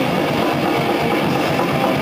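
Death metal band playing live: distorted electric guitars over a drum kit, loud and unbroken.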